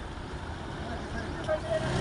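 Outdoor roadside ambience: a steady haze of traffic noise with faint, scattered voices.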